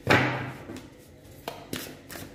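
A deck of tarot cards being handled over a table. A rustling burst of cards at the start fades away, then two short clicks come close together near the end.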